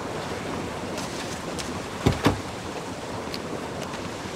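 Steady ocean surf breaking on a beach, with two quick thumps close together about halfway through.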